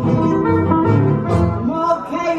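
Two nylon-string acoustic guitars playing together, picked and strummed, with a woman singing over them.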